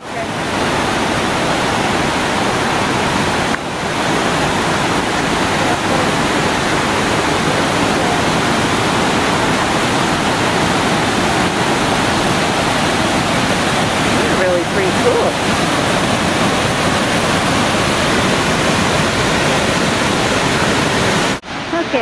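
River white water rushing over rock ledges in rapids and a small cascade: a steady, loud rush that cuts off suddenly shortly before the end.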